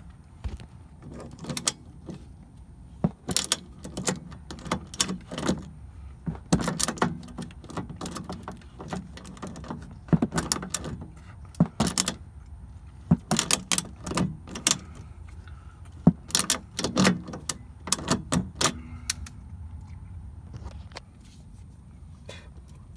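Kobalt ratcheting crescent wrench being worked on a rusted suspension nut, giving irregular sharp metal clicks and clinks, some in quick clusters.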